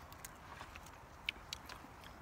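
Quiet outdoor background with a few faint, short clicks, the clearest two a little past the middle.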